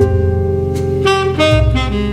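A recorded tenor saxophone plays a jazz lick over a backing track with a bass line, played back from a jazz practice app. It starts suddenly as playback begins.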